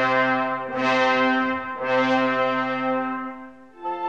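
Orchestral music with the brass section playing three long held chords, each entering about a second after the last, fading away shortly before a new chord comes in near the end.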